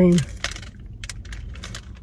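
Close-up mouth sounds of someone chewing a soft sponge cake: irregular wet clicks and lip smacks, several a second.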